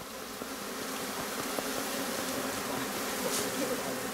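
A cluster of honeybees buzzing around their cut-off, handheld comb: a steady drone that grows slightly louder.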